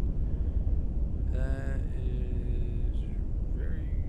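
Low, steady rumble of a nuclear test explosion's blast, like continuous thunder.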